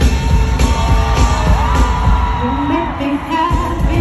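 Live pop concert music: a woman singing over a heavy bass beat, holding one long note with slides in pitch through the middle.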